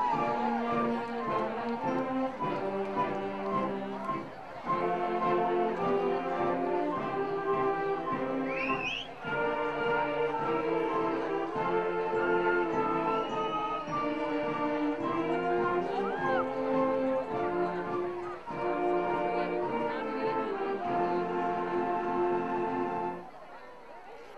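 Band music with brass playing slow, sustained chords, stopping shortly before the end.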